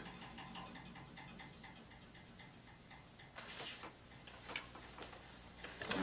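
Faint, quick, even ticking, with a few soft brushing or knocking sounds about three and a half and four and a half seconds in.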